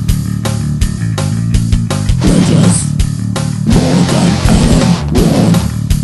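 Grindcore/death metal music: a heavy electric guitar and bass riff over frequent drum hits.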